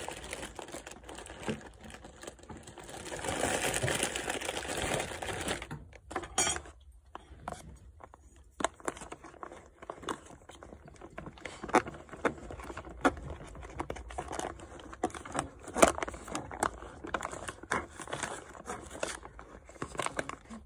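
Stiff foil-lined food pouch crinkling as it is handled for a few seconds, then a spoon stirring inside it: a long run of small crinkles and clicks.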